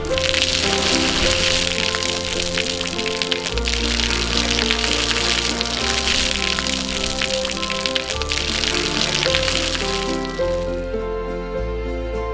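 Background music with held bass notes, over the steady hiss of a fountain's water jets splashing down; the water sound stops shortly before the end, leaving only the music.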